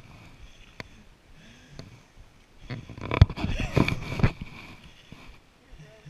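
An indistinct voice for about a second and a half in the middle, over the low noise of a bicycle riding a gravel trail, with a few sharp knocks and rattles from the bike.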